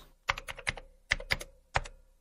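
A quick series of sharp, irregularly spaced clicks, several a second, over a quiet background.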